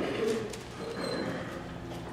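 A faint, low hummed voice in a lull of the preaching: a soft 'mm-hm' of agreement.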